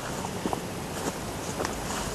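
Faint footsteps of a person walking outdoors, a few soft scuffs and ticks over low background hiss.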